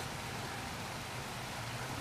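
Steady rain falling outside, heard as an even hiss.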